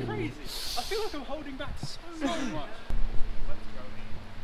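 Indistinct voices of people talking and exclaiming, with a short hiss just after the start and a steady low hum setting in about three seconds in.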